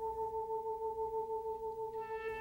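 Background music: a single long sustained note, almost pure in tone, with a gentle waver. A fuller string sound begins to come in at the very end.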